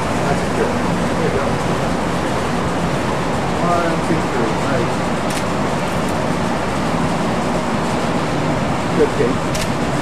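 Steady background noise that holds at an even level throughout, with faint speech in places and a short spoken word near the end.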